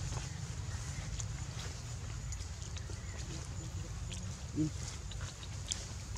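A macaque gives a brief low grunt about four and a half seconds in. Under it run a steady low rumble and faint rustling and clicking in the leaf litter.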